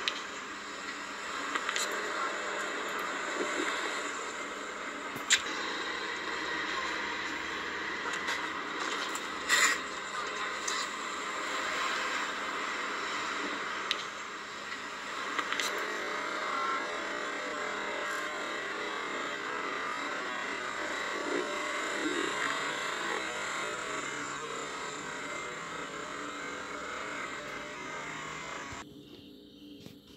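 City street traffic ambience, played through computer speakers and re-recorded: a steady wash of traffic noise with a few sharp clicks, cutting off about a second before the end.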